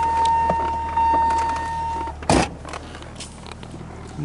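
1992 BMW 325i's straight-six engine idling steadily, with a steady high whine over it that stops about two seconds in, followed by a single sharp clunk.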